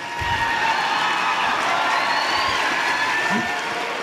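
Audience applauding and cheering in a steady wash of clapping, with a few raised voices through it.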